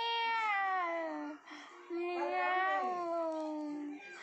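A baby's voice in two long drawn-out wailing calls, the first about a second long and the second nearly two seconds, each sliding in pitch.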